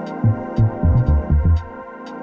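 House music played live on Korg Volca synthesizers and drum machines: a deep repeating bass pattern under a held synth chord, with short hi-hat ticks. The bass drops out briefly near the end.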